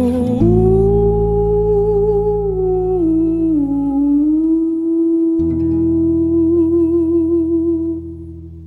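The close of an acoustic cover song: a voice hums a long held note that steps down in pitch a few times, over sustained low accompaniment chords. The music begins to fade right at the end.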